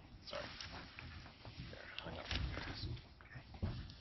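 Faint handling noise from a clip-on microphone being fitted to a speaker's clothing: scattered soft bumps and rustles, with a few brief clicks.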